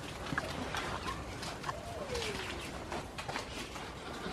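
A hen's drawn-out call, one long note falling in pitch about two seconds in, over scattered light clicks and rustling from goats moving on the straw-covered floor.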